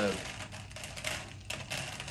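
Handfuls of small, light cut-out fish pieces being stirred and dropped back into a bowl: a dry, crackly rustle made of many quick little clicks.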